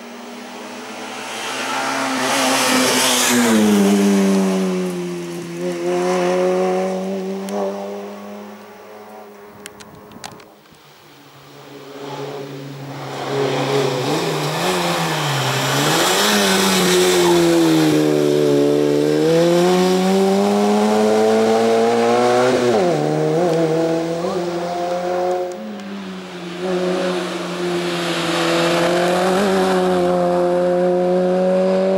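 Peugeot 106 Rally race car's four-cylinder engine revving hard up a hill-climb course, the pitch climbing and dropping again and again with gear changes and corners. The sound breaks off sharply about ten seconds in and again near 25 seconds, then picks up at full revs again.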